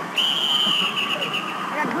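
Referee's whistle blown in one long, steady, high blast of about a second and a half that fades out, over arena crowd noise.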